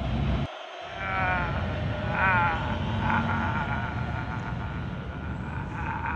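Wavering, bleat-like cries with a trembling pitch: two short ones, then a longer, steadier one held to the end, over a low steady background rumble.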